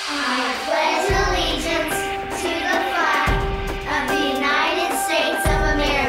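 Children's voices in unison reciting the opening of the Pledge of Allegiance over background music, with held notes and a deep bass note about every two seconds.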